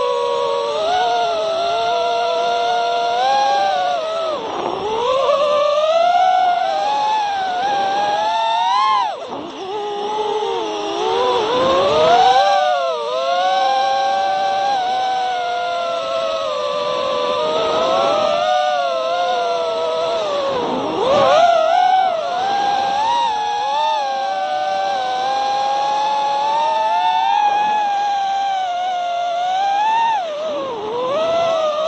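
Brushless motors of an iFlight Nazgul5 4S FPV racing quadcopter, heard through its onboard camera, whining continuously as it flies. The pitch rises and falls with the throttle, dropping sharply several times as the throttle is chopped and climbing again as it punches back out.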